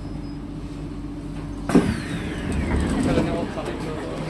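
Train doors of a stopped Kawasaki/Sifang C151A MRT car opening. A steady hum is cut by a sharp thud about two seconds in, followed by a hiss and a sliding sound that falls in pitch as the doors part.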